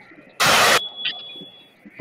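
A short, loud burst of TV static hiss, about half a second long, part of a music video's intro effects, followed by a faint thin steady high tone.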